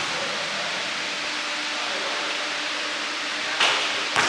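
Steady hiss of room noise in a large indoor gym, with a faint steady hum. Near the end a basketball strikes once, a sharp knock.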